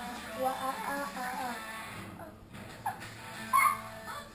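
Children's cartoon playing on a television: music with singing voices, then a few short, high voice sounds near the end, the loudest of them just before it ends.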